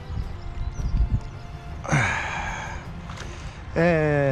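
A man's loud sigh of relief about two seconds in as a carp is drawn into the landing net, followed near the end by the start of a voiced exclamation. A low rumble of wind on the microphone and a few dull knocks from the water and net run underneath.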